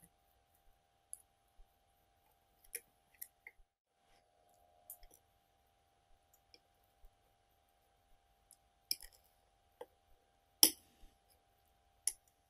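Knife and fork clicking and scraping against a ceramic plate as food is cut: scattered light clicks, with one sharper clink near the end.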